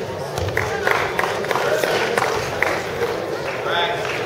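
Spectators' voices in a gym during a wrestling bout, scattered talk and calls over a steady hum of the room, with a few short sharp sounds.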